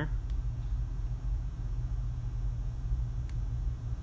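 Steady low background hum with a faint hiss, like room air conditioning, broken only by two faint ticks, one near the start and one near the end.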